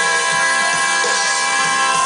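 Live rock band playing an instrumental stretch: a chord held steady over a drum beat of about three strokes a second, with no singing.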